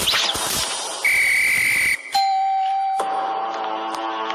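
Cartoon soundtrack of music and sound effects. About a second in, a loud, steady high whistle-like tone sounds for about a second; a lower steady tone follows, then music.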